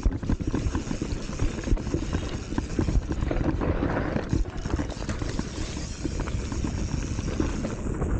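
Commencal Meta HT hardtail mountain bike rolling down a rocky dirt trail: tyres crunching over gravel and stones, with a constant clatter of many quick knocks and rattles from the bike over the bumps.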